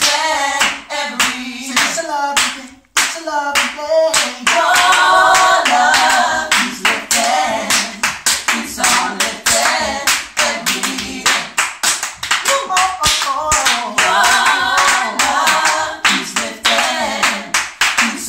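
A cappella gospel vocal quartet singing in harmony, with steady hand-clapping keeping the beat.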